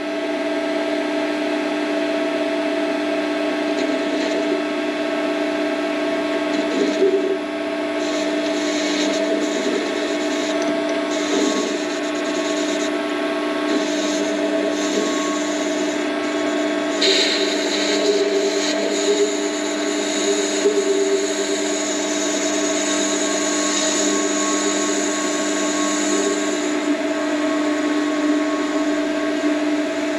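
Warco WM180 mini lathe running, its drive giving a steady whine, as a radius tool is fed by hand into a spinning aluminium pulley blank. A higher scraping noise from the cut comes and goes through the middle stretch.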